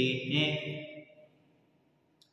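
A man's voice drawing out the last word of a Hindi sentence in a sing-song, chant-like delivery, fading out about a second in, followed by near silence.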